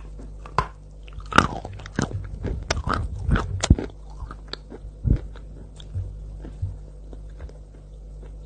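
Bites and crunching chews of a chunk of white edible chalk coated in cocoa sauce, picked up close by a clip-on microphone. A quick run of sharp, brittle cracks comes in the first half, then a few scattered crunches as the chewing slows.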